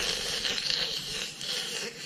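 Continuous hissy slurping through the straw of a juice box.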